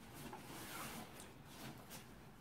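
Faint handling sounds of a plastic punch-needle embroidery pen and yarn being worked during threading: soft rubbing with a few light ticks.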